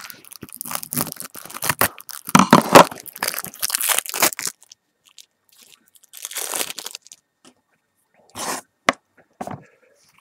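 Plastic wrapper of a trading-card hanger pack being torn open and crinkled, crackling for about four and a half seconds, then a few shorter rustles and a sharp click near the end.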